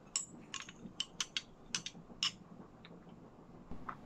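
A metal spoon clinking against a drinking glass of iced drink as it is stirred: about nine light, sharp clinks over the first two and a half seconds.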